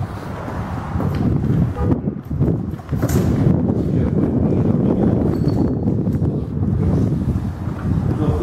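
Wind buffeting the camera microphone: a loud, low rumble that dips briefly about two seconds in, with a few faint clicks over it.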